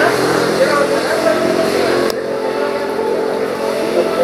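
Indistinct voices of people talking over a steady low hum; the higher sounds drop away suddenly about two seconds in.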